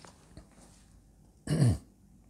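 A man clears his throat once, briefly, about one and a half seconds in, the sound dropping in pitch; before it there is only faint room tone.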